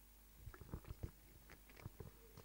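Near silence broken from about half a second in by a handful of faint, irregular knocks and bumps, of the kind made by handling or movement near a microphone.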